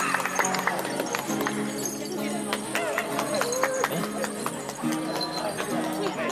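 Music from the performance: held low chord notes that change every second or two, with many sharp clicks scattered over them and a wavering voice heard now and then.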